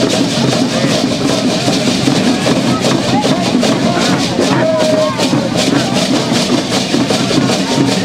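Hand drums beating and dancers' cocoon leg rattles shaking in a busy, continuous rattle as the masked Yoreme Lenten dancers move, with the voices of people nearby mixed in.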